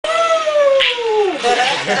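A long, high-pitched playful squeal that slides steadily downward for about a second and a half, followed by short excited vocal sounds and a laugh near the end.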